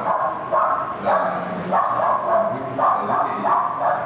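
A man's voice amplified through a public-address system in a reverberant hall, coming in a run of short phrases with the deep bass and treble cut off.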